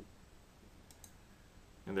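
Faint clicks of a computer keyboard key being pressed, a pair close together about a second in, as the Delete key is hit.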